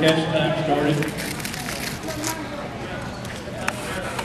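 A person's voice calls out briefly in the first second, then a steady background murmur with a few faint clicks and knocks continues.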